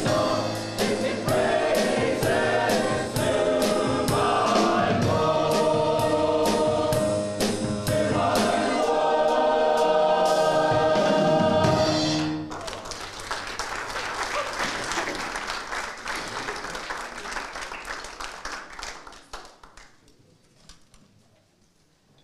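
Mixed church choir of Salvation Army songsters singing an upbeat song over a steady beat, ending about twelve seconds in. Applause follows and fades away over the next several seconds.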